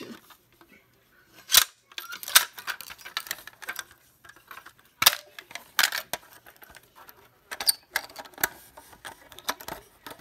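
Plastic clicks and knocks as the housing and handle of a Fire-Lite BG-12SL single-action fire alarm pull station are handled: a run of irregular sharp clicks, the loudest about one and a half seconds in and about five seconds in.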